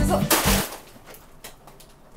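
Background music with a beat that stops about half a second in, followed by faint crinkling and crackling of a plastic cereal bag being handled and opened.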